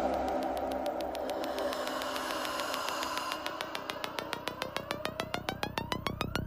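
Electronic psytrance breakdown: with the beat dropped out, a synth pulses rapidly and speeds up while a tone sweeps upward from about halfway through, building toward the next drop.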